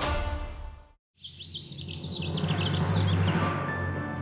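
Choral theme music fades out about a second in. After a brief silence, birds chirp in a quick, busy run over a low swelling drone, and soft sustained music notes enter near the end.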